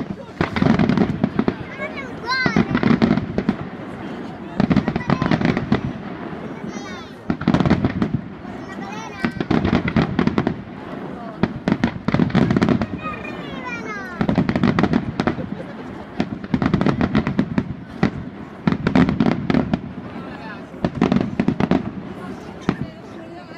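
Aerial fireworks display: shells bursting about every two seconds with a boom, each followed by dense crackling, with occasional gliding whistles in between.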